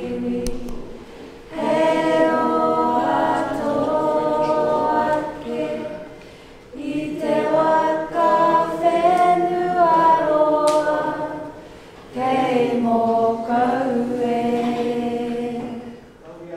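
A group of people singing together unaccompanied, in three long phrases with short pauses for breath between them, fading away near the end.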